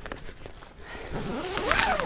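Zip on a fabric awning panel being pulled open, with a short bright rasp near the end.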